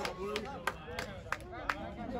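Handclaps, a sharp clap about three times a second, over the murmur of spectators' voices.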